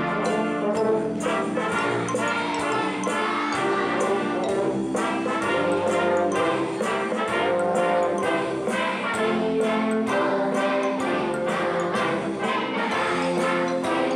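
Youth wind band playing a Christmas tune: brass instruments holding sustained chords and melody over a steady beat of about two strokes a second.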